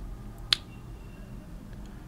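A single short, sharp click about half a second in, over a faint steady hum.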